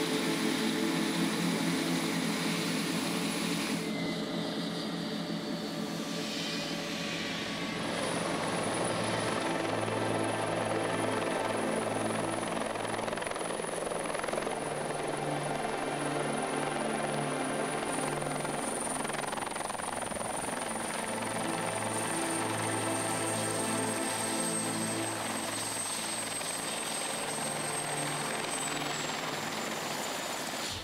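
Helicopter running, a steady rotor and engine sound with a thin high whine that sinks slightly near the end.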